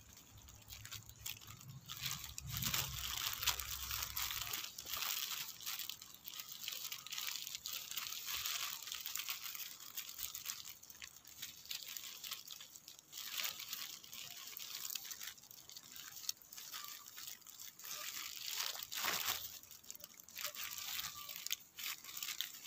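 Irregular rustling and crinkling as a bitter gourd vine's leaves and the plastic wrapping over its gourds are handled.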